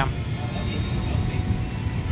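Steady low rumble of background road traffic.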